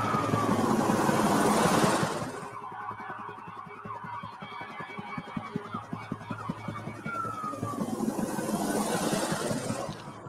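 Opening of a short film's soundtrack: a fast, even run of pulses with two swelling whooshes, each carrying a short falling tone. The first whoosh dies away about two seconds in and the second builds near the end.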